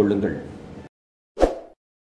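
The last words of speech trail off in the first second, then one short pop sound effect about one and a half seconds in, as an animated end screen appears.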